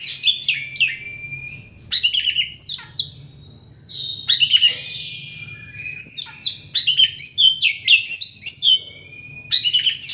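Oriental magpie-robin singing loudly, in rapid bursts of varied whistles and sharp down-slurred notes, with brief pauses between phrases.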